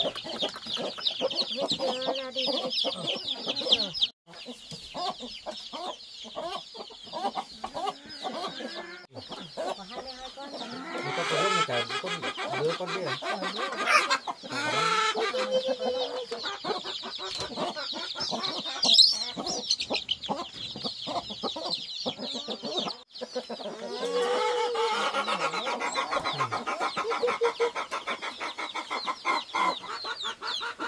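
A brood of young chicks peeping constantly in rapid, high cheeps, with a hen's lower clucking coming in twice.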